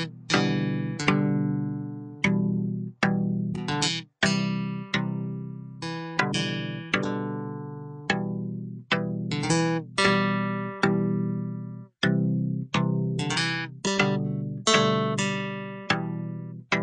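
Instrumental music: a plucked guitar playing a slow line of single notes and chords, each struck sharply and left to ring out and fade.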